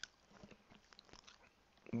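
Near silence with a few faint, scattered small clicks.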